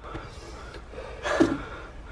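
A man breathing hard and gasping, out of breath from a fright, with one louder gasp about one and a half seconds in.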